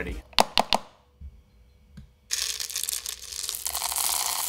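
A few sharp clicks, then from about two seconds in a steady rushing rattle of hard wax beads pouring from a jar into the metal pot of an electric wax warmer.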